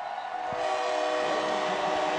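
A stadium horn sounding a steady chord of several pitches, starting about half a second in, over crowd noise: the signal that the game clock has run out.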